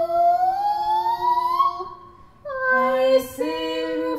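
Unaccompanied female voices singing sustained notes. One voice slides slowly upward over a steady lower note, and after a short pause about halfway through, several voices come in together on a held chord.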